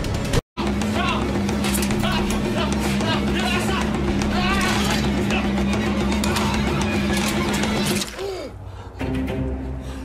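Edited action-film soundtrack: music with a steady low held tone under wavering higher sounds, and voices in the mix. It cuts to dead silence for a moment about half a second in, and a falling swoop near the end drops it quieter.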